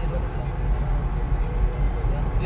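Steady low rumble of a moving car heard from inside the cabin: engine and tyre noise while driving.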